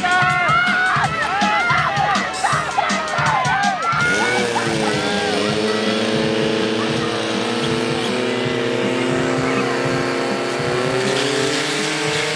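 Spectators shouting and cheering for the first few seconds. About four seconds in, a portable fire pump's engine revs up and holds at high, steady revs while it pumps water out through the attack hoses to the targets.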